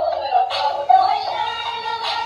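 Dancing cactus plush toy singing a song through its built-in speaker, a synthetic singing voice over music.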